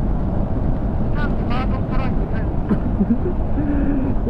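Steady low wind rush and road rumble of a motorcycle at expressway speed, heard on the bike's own microphone, with a voice talking briefly over it partway through.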